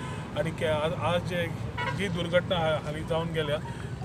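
A man speaking, over a steady low hum.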